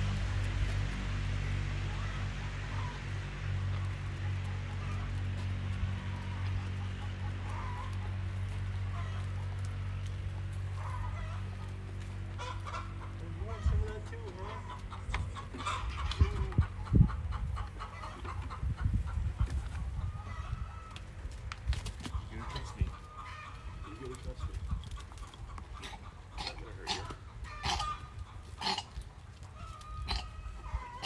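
Chickens clucking in short repeated calls, thicker in the second half, over a steady low hum that fades out over the first dozen seconds.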